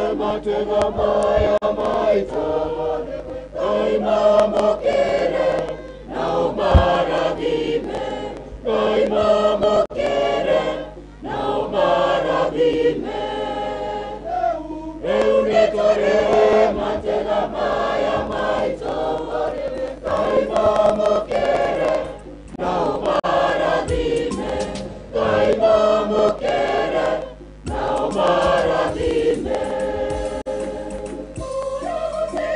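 Church choir singing together in a steady stream of phrases, broken by short pauses every few seconds.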